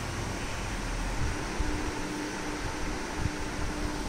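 Steady, even whirring background noise of a room fan, with a faint steady hum joining about a second in.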